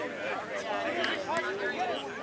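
Indistinct, overlapping chatter of children's and adults' voices calling out, no single clear speaker.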